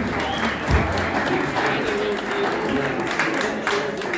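Audience applauding, a steady patter of many hands clapping with voices mixed in.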